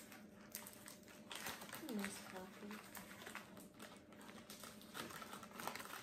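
Faint rustling and crinkling of paper coffee filters and tape being handled, with scattered small clicks.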